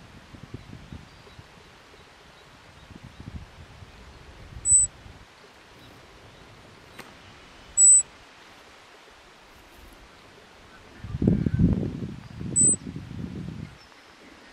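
Three short, high-pitched chirps a few seconds apart from an animal, over a quiet outdoor background. A stretch of low rumbling noise comes in toward the end.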